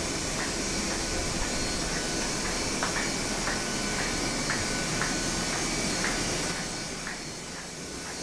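Goss Community web offset printing press running: a steady mechanical rumble and hiss with a light regular click about twice a second. It gets a little quieter near the end.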